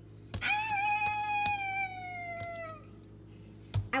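One long, high meow, held for about two and a half seconds and sliding slowly down in pitch.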